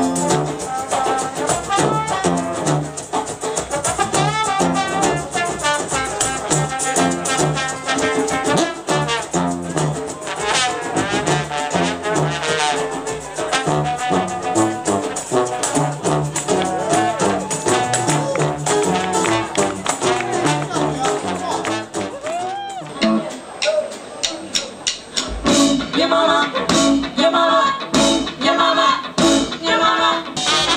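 Jazz band music led by brass, trumpet and trombone. Near the end the music thins briefly with a sliding note, then a new section with a strong, steady beat comes in.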